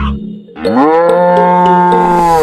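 A single long cow moo starts about half a second in, rising at its onset and then held steady. Background music cuts out just before it.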